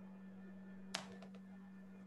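Faint steady electrical hum on an open video-call microphone, with one sharp click about a second in followed by a few fainter ticks.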